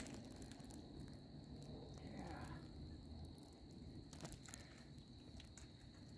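Near quiet: a faint steady high-pitched whine holds throughout, with scattered small clicks and a brief rustle as hands grip and brush the bark of the fallen tree.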